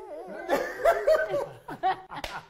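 A drawn-out voice note trails off, then people break into laughter for about a second, with one short chuckle near the end.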